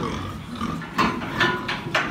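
Pigs grunting in a pen, with several short, sharp noises in the second half.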